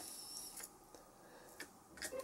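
Near silence: room tone, with one faint tick about one and a half seconds in.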